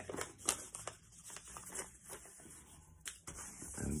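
A sheet of paper being folded back and creased by hand on a wooden tabletop: scattered soft rustles and a few sharper clicks, one about half a second in and another about three seconds in.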